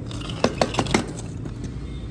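Four quick, light metallic clinks in a row, about half a second in, over a steady low background rumble.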